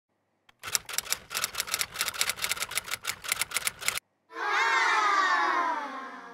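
Intro sound effects for an animated logo: a rapid run of sharp clicks, about six a second, for a little over three seconds, then a sustained tone with overtones that slides slowly down in pitch and starts to fade near the end.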